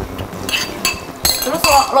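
A few sharp clinks of a ceramic bowl knocking against the rim of a nonstick frying pan as egg and shredded-carrot batter is poured into hot oil.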